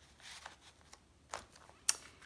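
Paper rustling and sliding as a card tag is pulled out of a paper journal pocket, with two sharp clicks near the end, the second louder, as it is set down.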